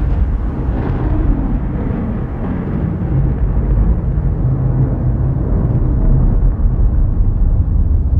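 Deep, steady low rumble, an ominous sound effect laid under a horror-themed intro.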